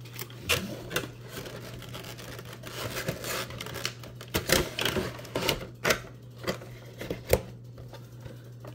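Hands packing a vinyl Funko Pop figure back into its clear plastic insert and cardboard box: irregular clicks, taps and rustles of plastic and card, with the sharpest knock about seven seconds in.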